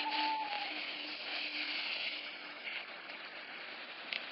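A long, drawn-out hissing "sssss" in imitation of a snake, slowly fading, with a faint steady tone beneath it.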